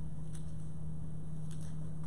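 A steady low electrical hum with a couple of faint clicks.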